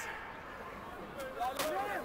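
Short shouts from rugby players in a scrum, about a second in, with a couple of sharp knocks, over faint open-air background.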